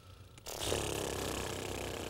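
Several singers doing a lip trill together as a breath-support exercise: the lips flutter in a steady buzz on one held pitch. It starts about half a second in.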